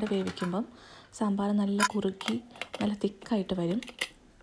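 A woman's voice speaking, with a short pause about a second in.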